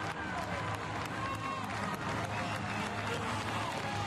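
Ballpark crowd noise: a steady din of many overlapping voices, with no single sound standing out.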